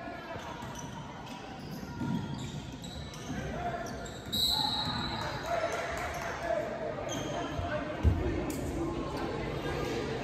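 Basketball bouncing on a hardwood gym floor during play, with voices echoing in a large gym hall and a brief high squeak a little under halfway through.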